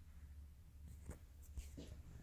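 Near silence: faint low room hum, with a few soft rustling handling noises a second or so in.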